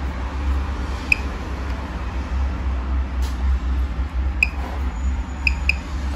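Handheld Gamma-Scout Geiger counter ticking sparsely, four short beeps spread unevenly over a few seconds, each a single detected count, over a steady low hum. The slow, irregular rate marks a low dose rate of 0.125 to 0.250 on its display, near background, from a rock with a bit of potassium in it.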